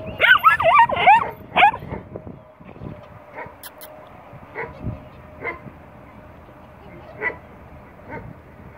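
Small dog whining and yipping in a quick run of high, wavering calls for about the first two seconds, then a few faint short sounds.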